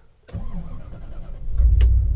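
1990 Bentley Turbo R's turbocharged 6.75-litre V8 being started, heard from inside the cabin: the starter cranks briefly, then the engine catches about one and a half seconds in and runs on with a low, steady rumble.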